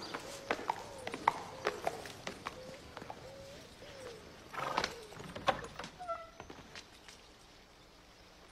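Horse's hooves clip-clopping: a string of irregular knocks that thins out after about five seconds, with a short louder burst near the middle.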